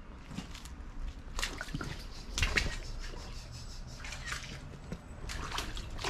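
Footsteps wading through shallow creek water, with irregular splashes and sloshes every half second or so.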